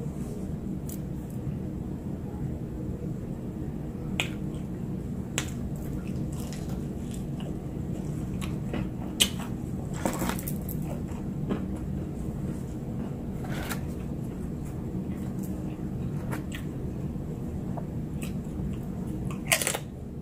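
Close-miked chewing of crispy breaded fried food, with a scattered run of short sharp crunches over a steady low background hum.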